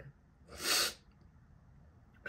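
One short, sharp sniff through the nose, about half a second long, from a person who is crying.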